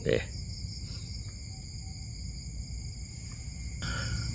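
Night insect chorus: crickets calling in a steady high-pitched trill, over a faint low rumble.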